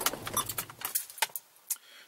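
Ignition key clicking and jangling as a 2008 Subaru Liberty is switched off; the engine's low idle hum stops about a second in.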